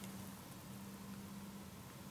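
Quiet ambience: a faint steady hiss with a low steady hum underneath, and no distinct event.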